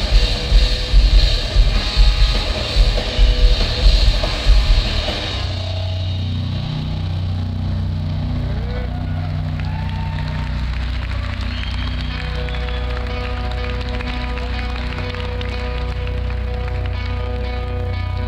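Sludge/doom metal band playing live: heavy distorted guitars with regular drum hits for about the first five seconds, then the drums stop and the guitars and bass are left droning in a steady low sustain, with higher held guitar tones joining about twelve seconds in.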